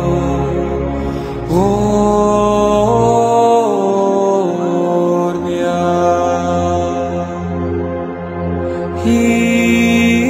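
Background music: a slow, chant-like piece of held notes over a low sustained drone. About one and a half seconds in, a note slides up into place, and it then steps up and back down a few times.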